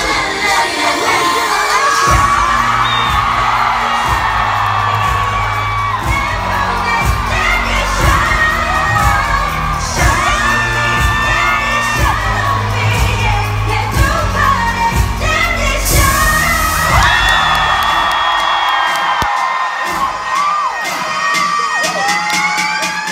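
K-pop girl group performing live: women singing over a pop backing track with a steady beat, while the audience screams and cheers, heard from within the crowd.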